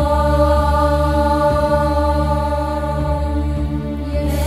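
Music: a steady sustained drone of several held tones over a low bass hum, the backing of a recorded Vedic chant.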